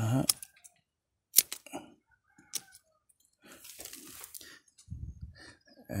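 Hand pruning shears snipping through pomelo branches: a few sharp snips, the loudest about a second and a half in, with a soft rustle of leaves a little later.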